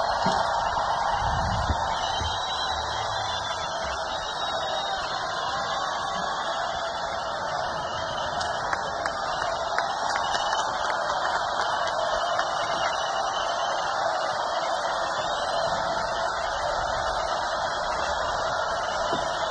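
Large festival crowd cheering and applauding between songs, a steady wash of many voices and clapping that holds at one level.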